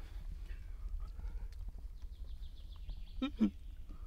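A man's short startled cry near the end, as a stone moves under his hand while he gropes in an underwater crevice for crayfish. Before it, about halfway through, a faint quick trill of a songbird falls slowly in pitch, over a steady low rumble.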